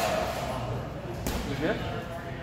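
Grappling on foam mats: two sharp slaps or thuds, one at the start and one just over a second later, as bodies and hands hit the mat.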